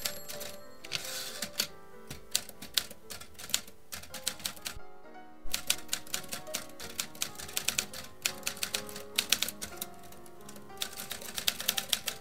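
Typewriter key clacks in quick, irregular runs over soft background music, pausing briefly about five seconds in.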